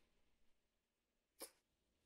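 Near silence in a pause between speech, broken by one brief soft click about one and a half seconds in.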